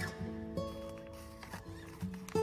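Background music: sustained instrumental notes changing pitch about every half second, softer in this stretch.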